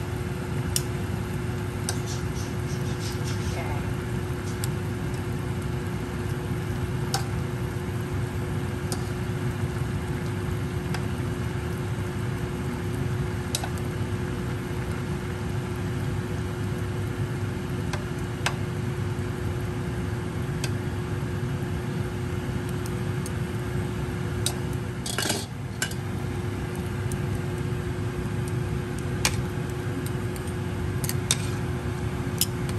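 A steady low mechanical hum with one constant tone runs throughout. Over it, a few sharp clinks of metal on a stainless steel cooking pot, with a louder clatter about 25 seconds in.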